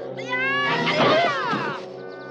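Two high-pitched vocal cries, each falling in pitch, over film-score music with held notes.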